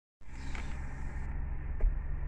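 Car engine idling, heard inside the cabin as a steady low hum, with a short faint click near the end.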